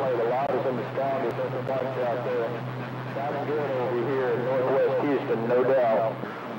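Faint, muffled voice of a distant station coming in over a CB radio receiver, too weak to make out, under a steady hiss. A steady low hum runs underneath and stops just after the voice ends.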